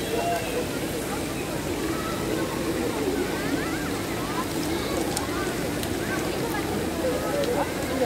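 Swimming-pool ambience: a steady rush of falling water from a pool cascade, with distant voices and chatter from other swimmers.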